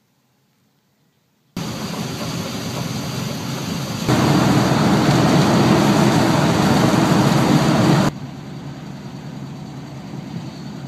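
Near silence, then about one and a half seconds in a vehicle's engine and road noise heard from inside the cab starts abruptly: steady and loud, louder still from about four to eight seconds in, then quieter near the end.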